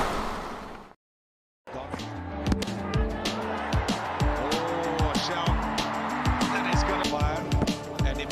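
A whoosh transition effect fading out over the first second, a brief dead gap, then background music with a steady low thumping beat.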